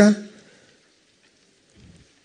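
The last word of a man's voice over a microphone and PA, fading with a short echo, then near silence with only a faint background hiss.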